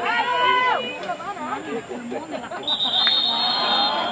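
A referee's whistle blown once, a steady high tone lasting just over a second near the end. Under it are voices: long drawn-out shouts at first, then chatter.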